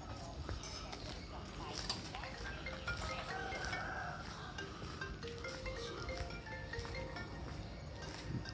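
Faint, distant bells ringing a run of short notes at several different pitches, a sound that seems to come from a monastery on the hill.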